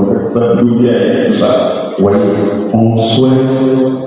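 A man's voice chanting a slow melody into a microphone, in long held notes with short breaks between phrases.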